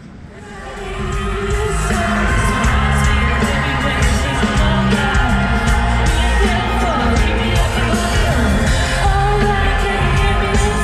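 Amplified live pop music with a singing voice over a heavy bass beat, fading up over the first second or two.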